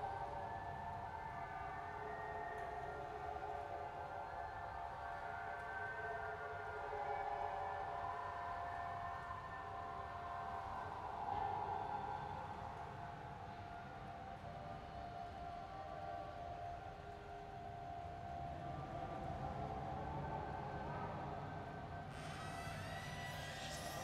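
Eerie ambient drone of a spooky soundscape: several long held tones that shift slowly, over a low rumble.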